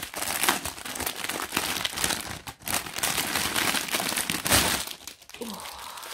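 Clear plastic bag holding small packets of diamond-painting drills crinkling and rustling in irregular crackles as it is handled.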